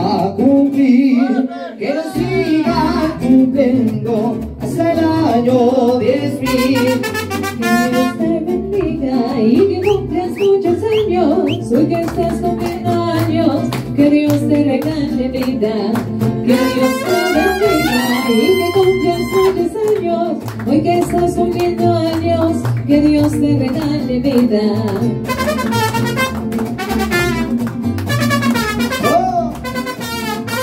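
Live mariachi band playing a song's introduction: guitarrón bass notes and strummed guitars under trumpet melody lines, with a bright brass passage partway through.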